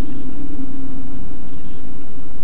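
Steady drone of a car's engine and tyre noise heard from inside the cabin, with two brief high-pitched tones, one at the start and one about one and a half seconds in.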